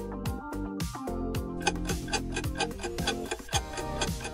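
Countdown-timer background music with a steady beat of about two a second and clock-like ticking, running while the answer time counts down.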